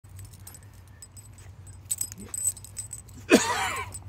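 Metal collar tags and leash clip jingling as an Australian cattle dog jumps up, then near the end a loud whine from the dog, bending up and down in pitch.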